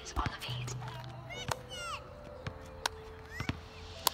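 Basketball being checked and handled on an outdoor court: a few sharp slaps of the ball against hands or asphalt, spaced a second or more apart.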